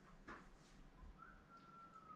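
Near silence: room tone, with one faint, thin whistle-like note starting a little past the middle and drifting slightly lower.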